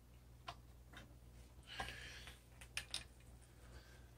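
Very quiet low electrical hum from a guitar pedal chain, with a few faint, scattered clicks and ticks as a hand works the knobs of a noise-reducer pedal.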